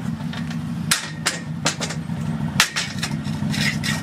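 Aluminium loading ramps clanking as they are handled and set down on paving: about four sharp metal knocks, the loudest near the end, over a steady low hum of an idling engine.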